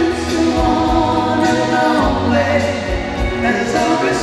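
Live country ballad played by a small band: a woman sings long held notes into a microphone, a man's voice harmonising with her, over electric guitar and a rhythm backing.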